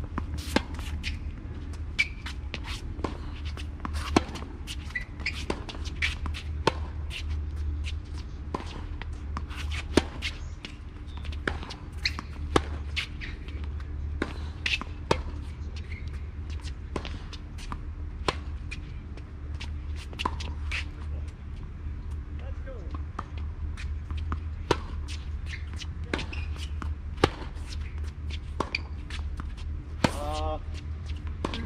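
Tennis rally on a hard court: a run of sharp pops of balls struck by racquets and bouncing on the court, irregular and often about a second apart, with sneakers scuffing between shots over a steady low rumble.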